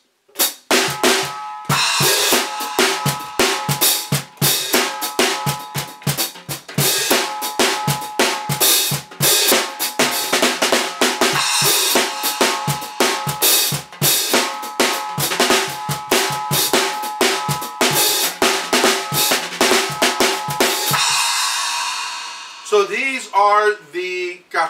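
Small acoustic drum kit, with a cajon as the kick, a birch snare and Sabian SR2 hi-hats, played with thick Vater Cajon Brush rods in a steady groove for about twenty seconds. It ends on a cymbal ringing out and fading over a couple of seconds.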